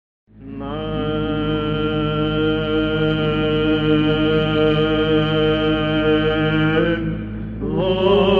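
Byzantine chant in the plagal second mode: a male chanter holds one long opening note over a steady low drone. Near the end the note glides up and breaks off briefly, then the melody resumes with moving pitch.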